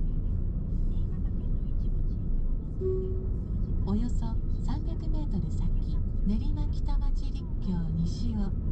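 Steady low road and engine rumble of a car driving, heard inside the cabin. From about four seconds in, a voice speaks over it.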